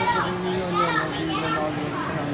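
Overlapping chatter of children's and adults' voices among riders on a moving carousel.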